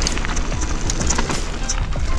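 Background music laid over the sound of a Rocky Mountain Maiden downhill mountain bike rolling down a dirt singletrack: tyre and trail noise with a constant rumble and many small clicks and knocks of the bike rattling over the ground.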